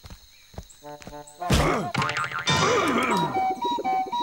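Cartoon sound effects of a troll running into a barbed-wire fence: a loud thud about a second and a half in, followed by a springy boing with a wobbling fall in pitch, then a long falling glide. Short musical notes play near the end.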